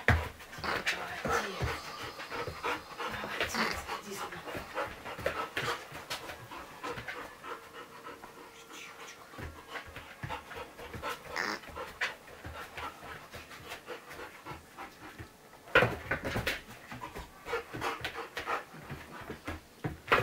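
A young American Akita panting, with many short taps and knocks around it; the taps thin out in the middle and come thick and loud again about three-quarters of the way through.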